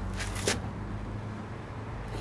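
A steady low hum, with a couple of short clicks in the first half second.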